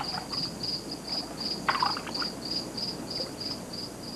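Cricket chirping in a steady high-pitched series, about four chirps a second, with a brief louder noise a little under two seconds in.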